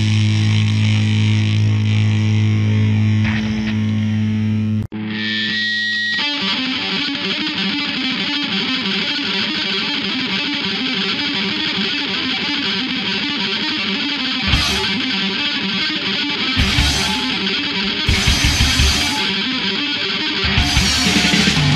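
Hardcore punk recording with heavily distorted electric guitar. About five seconds in the music cuts out for an instant, a guitar plays alone for about a second, then the full band with drums comes back in.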